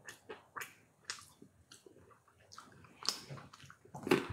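Faint, irregular crunches and small clicks of someone eating mixed nuts: chewing and picking pieces out of a handful.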